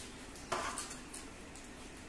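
A hand scraping wet medicinal paste in a stainless-steel bowl: one short scrape about half a second in, followed by a few light clicks.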